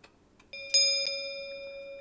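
Countdown-timer sound effect: the last clock ticks, then about half a second in a sustained chime tone with a bright bell-like strike, which rings on steadily. It signals that the thinking time has run out.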